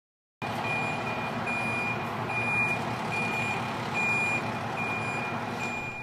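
A fire engine's reversing alarm beeping steadily, a little more than once a second, over the sound of its running engine; it starts abruptly about half a second in.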